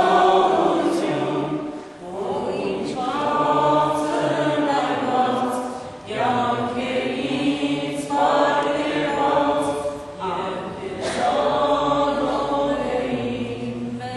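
A congregation singing a hymn together in unison, in phrases of about four seconds with short breaks between them.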